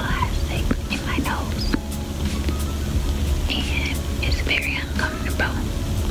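A woman whispering over a hip-hop instrumental with a steady low bass.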